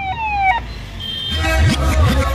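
Electronic vehicle siren sounding a repeating falling tone, each sweep about half a second long. It cuts off about half a second in. Crowd noise rises near the end.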